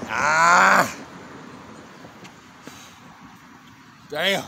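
A man's loud, drawn-out groan of exertion, about a second long and falling in pitch, as he catches his breath bent over after a set of pull-ups.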